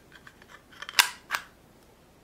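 Monoprice speaker wall-mount bracket being handled as its mount piece is slid into the wall plate: light ticking, then two sharp clicks about a second in, a third of a second apart.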